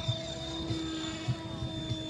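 Mikado Logo 690 electric radio-controlled helicopter in flight, its motor and rotor giving a steady whine as it climbs, with low irregular thumps of wind on the microphone.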